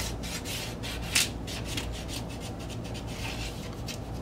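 Paper and cardboard from a vinyl record package, insert and jacket, sliding and rubbing against each other: a run of short swishing scrapes, with one sharper scrape about a second in.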